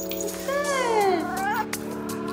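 A domestic cat meowing: a long call falling in pitch about half a second in, then a short rising one, over steady background music.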